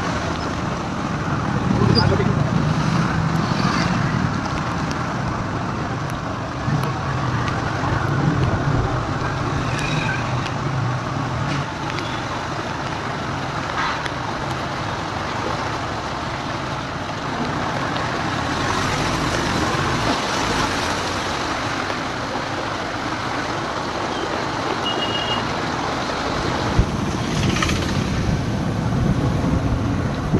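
Motorcycle engines and street traffic running steadily on rain-soaked roads, with tyres swishing through standing water.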